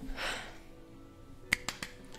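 Hand claps: one sharp clap about one and a half seconds in, followed quickly by two or three lighter ones, over faint background music.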